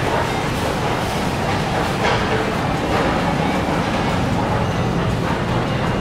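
Steady background noise of a busy grocery store, with faint music and shoppers' voices mixed in.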